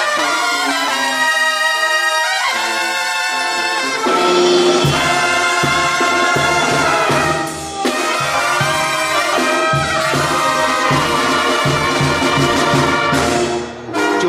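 Banda sinaloense playing an instrumental passage. Trumpets lead alone at first; about five seconds in, the sousaphone bass and drums come in with a steady beat under trumpets, clarinets and trombones, and the band breaks off briefly near the end.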